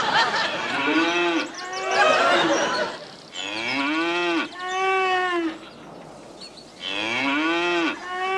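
Cattle mooing: drawn-out moos about a second long, each rising and then falling in pitch, coming in pairs about three seconds apart.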